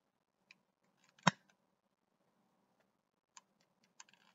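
A long-nosed utility lighter being handled and clicked to light a candle: one sharp click about a second in, then a few faint clicks near the end as the flame catches.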